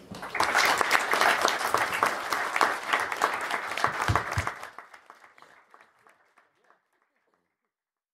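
Audience applauding, the clapping thinning out and dying away about five seconds in.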